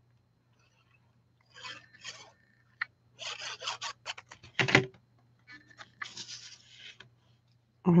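Tombow liquid glue's applicator tip rubbed and dabbed across a piece of cardstock: a run of short, scratchy scrapes and paper rustles that begins about a second and a half in, with one sharper knock a little past halfway.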